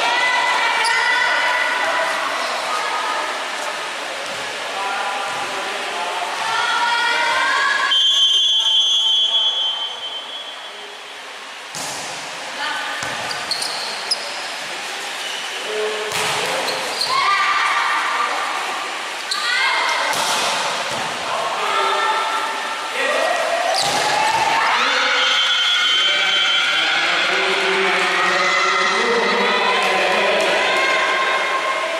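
Indoor volleyball match in an echoing hall: players and spectators shouting and chanting for most of the time, a short high whistle about eight seconds in, then sharp hits of the ball from about twelve seconds in.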